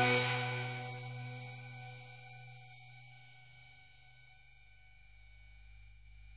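The closing sustained chord of an electro track ringing out and fading away once the beat stops, dying down to a faint low hum by about four seconds in.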